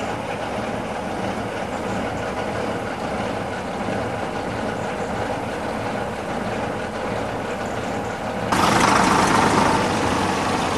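Vintage bus engine running, heard from on board as a steady drone. About eight and a half seconds in the sound suddenly jumps louder with a brighter rushing noise.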